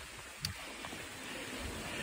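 Faint sounds of walking on a woodland path: a couple of soft footfalls and light rustling over quiet outdoor background noise.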